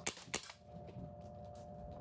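ASG Ingram M11 CO2 BB air pistol fired twice in quick succession, two sharp pops about a third of a second apart in the first half second.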